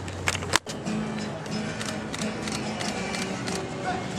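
Marching band music: sustained brass notes over regular percussion hits, after two sharp knocks and a brief dropout near the start.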